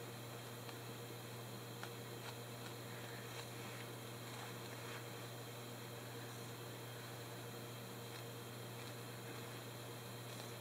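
Low, steady electrical hum and hiss, with a few faint, scattered soft clicks.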